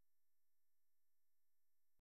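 Near silence after the narration stops.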